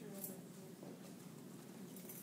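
Faint, indistinct voices in the background over quiet room tone, with no distinct sound event.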